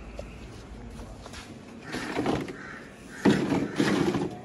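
Crows cawing: a harsh call about halfway through, then a couple more close together near the end.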